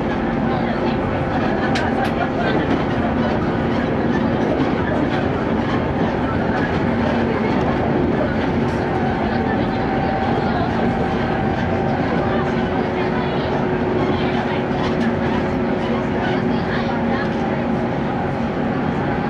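Inside a JR West Series 115 electric train running at steady speed: continuous rolling noise of wheels on rail with a steady hum running through it.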